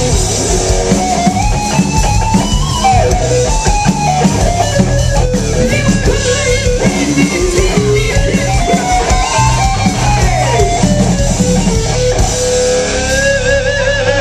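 Live hard rock band playing loud: distorted electric guitar over drum kit and bass, with a melody line that bends and slides between notes.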